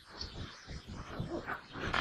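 Faint room noise in a pause between spoken phrases, with small, indistinct sounds.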